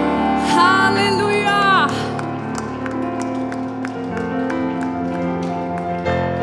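Live worship music: a wavering sung phrase over keyboard in the first two seconds, then sustained keyboard chords with light, evenly spaced ticks.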